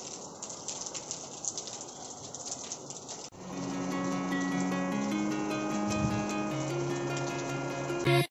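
Rain outdoors: an even hiss with scattered patter of drops. About three seconds in it cuts off abruptly and background music with long held notes takes over.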